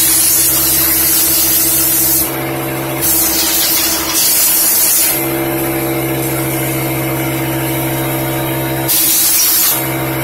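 Compressed air blasting from an air-hose nozzle into the exposed mechanism of a Pfaff Hobbylock 788 serger to blow out lint. It comes in bursts: a long blast, a brief pause a couple of seconds in, another blast, then a break of about four seconds before a short burst near the end. A steady pitched motor hum runs underneath throughout, plainer during the breaks.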